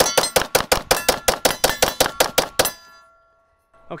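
Shadow Systems DR920P 9mm pistol, fired with its compensator removed, shooting a fast string of about six shots a second for nearly three seconds as a magazine is emptied until the slide locks back. A faint ringing tone fades out after the last shot.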